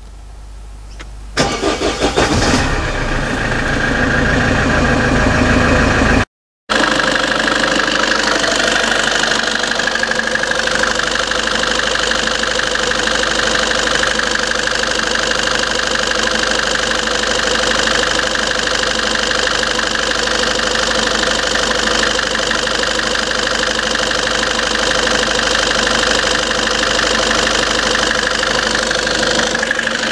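Great Wall V200's 2.0-litre 4D20 common-rail diesel cranked and started about a second and a half in, then settling into a steady idle with its newly replaced and coded number-four injector.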